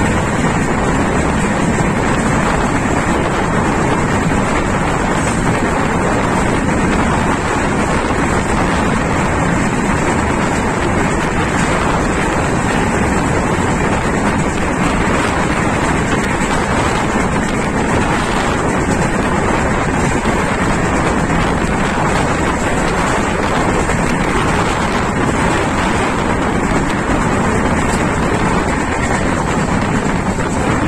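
Wind buffeting a microphone held out of the window of a moving Indian Railways passenger coach, over the steady running noise of the train at speed on the track.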